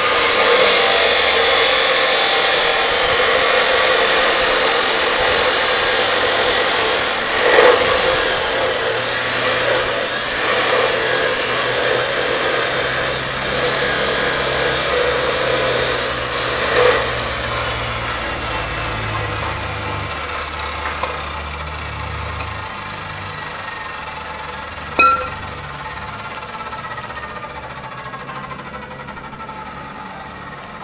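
A power tool running steadily and loudly, slowly fading over the stretch, with a few sharp knocks about 8, 17 and 25 seconds in. In the last third a faint tone slowly falls in pitch.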